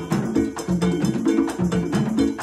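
A conga drum ensemble playing a fast, steady interlocking rhythm with open hand tones at a couple of pitches, while a cowbell keeps time on top.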